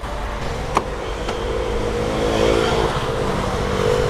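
A Jaguar XF's front door handle is pulled and the latch clicks open about three quarters of a second in, followed by a fainter click, over the steady hum of a car engine running.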